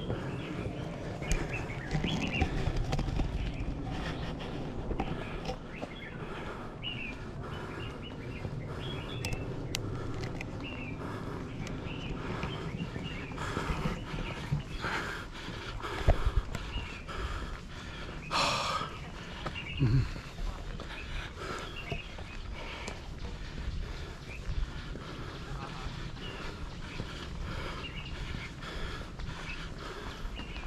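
Outdoor ambience on a wooded hiking trail: wind rumbling on the microphone and footsteps and handling noise from a camera carried by someone walking, with birds chirping in the background.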